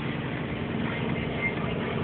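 1993 Geo Metro's three-cylinder engine idling steadily, heard from inside the cabin.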